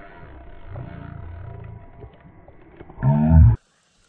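A man's loud, low shout about three seconds in, cut off abruptly, as a hooked fish leaps from the water; before it, a faint low rumble.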